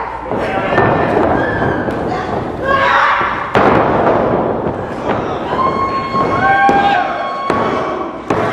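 Sharp thuds of wrestlers hitting the ring, the clearest about three and a half seconds in and another near the end, over people shouting.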